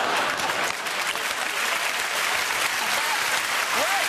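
Studio audience applauding, a dense, even clatter of clapping.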